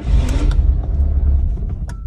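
Peugeot 206 petrol engine starting up: a low rumble that swells as it catches and eases off toward the end as it settles. It starts weakly, which the owner puts down to fouled spark plugs.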